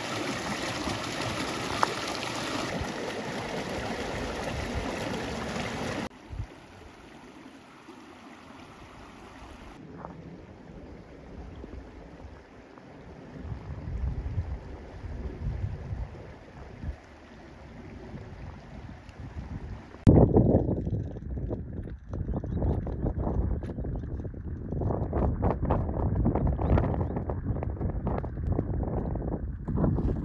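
Water rushing over rocks in a shallow creek riffle for about the first six seconds, then a much quieter, calmer flow. From about twenty seconds in, gusty wind buffets the microphone in loud, uneven rumbles.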